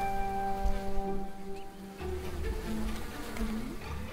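Greenbottle flies buzzing in flight, the buzz wavering up and down in pitch in the second half, over soft background music with a held note.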